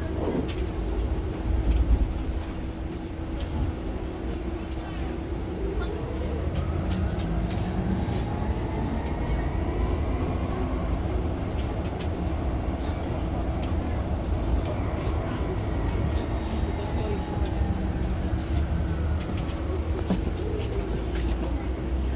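Electric drive whine of a Mercedes-Benz eCitaro G articulated electric bus, heard from inside the cabin over road rumble and a steady hum. The whine rises in pitch as the bus gathers speed, peaks about halfway through and falls away as it slows again.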